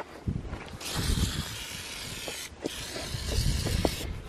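Aerosol chain lube sprayed onto a rusty kids' bike chain in two long hissing bursts, the first starting about a second in and the second just past the middle, with a few light clicks between.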